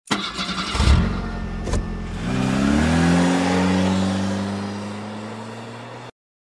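Car engine sound effect: a start-up with a thump about a second in, then the engine revs up and holds a steady pitch while slowly fading, stopping suddenly at the end.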